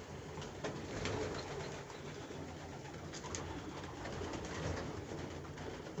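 A flock of domestic pigeons cooing softly, with a few faint scattered clicks as the birds peck at feed on the floor.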